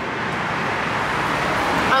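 Steady road traffic noise, swelling slightly as a car goes by.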